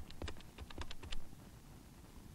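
Buttons being pressed on a telephone handset's keypad while dialling: a rapid run of about ten small clicks in the first second or so.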